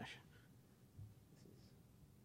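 Near silence: room tone, with the tail of a spoken word at the very start and a couple of faint small sounds about a second and a half in.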